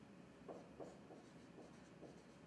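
Marker writing on a whiteboard: a series of faint, short pen strokes.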